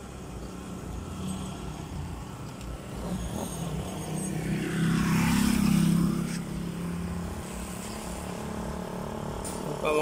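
A motor vehicle passing on the road: a low engine hum and tyre noise build up, peak about five to six seconds in, then fade away.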